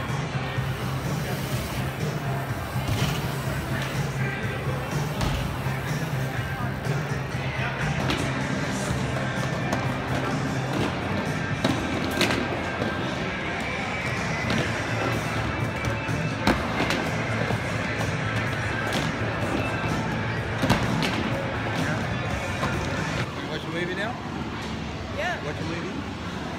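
Busy hall ambience of crowd chatter and background music, with wheels rolling on a halfpipe ramp and a few sharp knocks from riders hitting the ramp.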